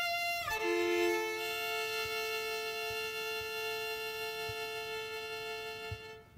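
Solo violin, bowed: a held high note slides down about half a second in to a long sustained lower note that slowly fades.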